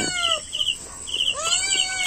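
A cat meowing twice: one drawn-out meow trailing off in the first half second and another starting about a second and a half in, with a quick high chirping repeating faintly behind.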